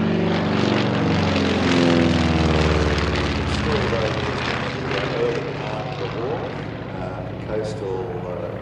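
Avro Anson Mk I's twin Armstrong Siddeley Cheetah radial engines on a low display pass. The engine note is loudest about two seconds in, then drops in pitch as the aircraft passes and fades over the next couple of seconds.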